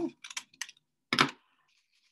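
Scissors snipping paper: a few light snips, then one louder, sharper cut just over a second in.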